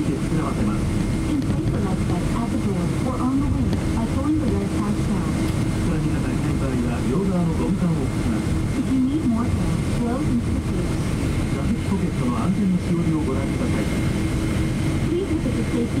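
Cabin noise of a Boeing 777-200 taxiing: a steady low rumble and hum from the engines at taxi power, with a faint higher steady tone, under indistinct passenger chatter.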